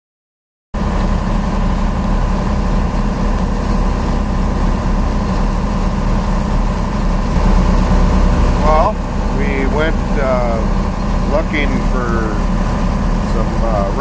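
A boat's engine running steadily under way, a loud low drone with a steady hum, which starts abruptly about a second in. A man's voice is heard over it from about nine seconds in.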